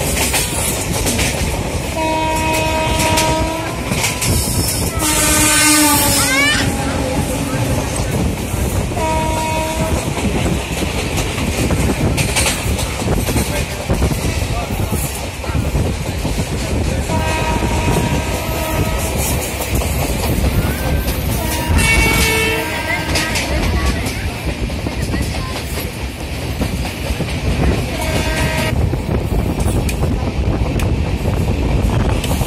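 Train running at speed: a continuous rumble and rattle of wheels on rail. Several short pitched hoots sound at intervals, one of them bending in pitch.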